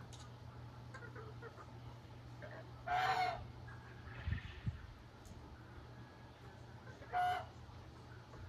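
Poultry calling twice: a half-second pitched call about three seconds in and a shorter one near the end. Two soft thumps fall between the calls, over a steady low hum.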